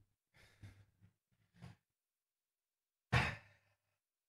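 A man's sigh about three seconds in, after a few faint breaths.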